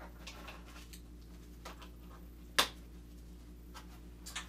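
One-inch strap and buckle being handled and pulled tight: a few faint clicks and rustles, with one sharp click about two and a half seconds in, over a steady low hum.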